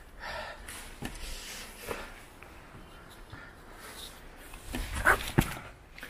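Heavy, out-of-breath panting, loudest in a couple of hard breaths near the end, with a few short scuffs of footsteps on rock.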